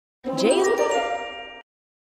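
A bright chime sound effect ringing once and fading out, marking an animated letter popping onto the screen.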